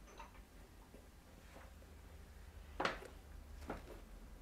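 Quiet small-room tone with a faint low hum and a few short, light clicks, the loudest about three seconds in and a smaller one just after.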